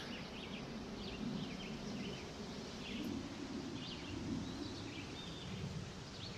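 Quiet outdoor garden ambience: a steady background hiss with faint, scattered short bird chirps.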